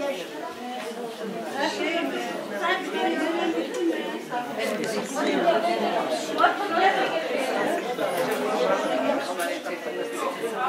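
A group of people talking at once in a room: overlapping chatter, with no single clear speaker.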